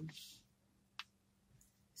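Near silence with a faint steady hum, broken by a single short, sharp click about a second in.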